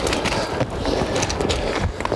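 A unicycle's tyre rolling and hopping over loose shale, with stones clattering and knocking irregularly under the wheel.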